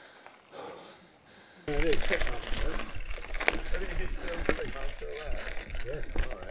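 Mountain bikes rolling on a gravel track, starting abruptly a little under two seconds in: scattered crunching clicks from the tyres, with a constant low rumble and riders' voices talking.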